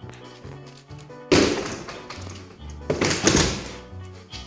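A door being banged or shoved open: two loud thuds with a rough scraping tail, one about a second in and another near three seconds. Background music with a steady bass line plays throughout.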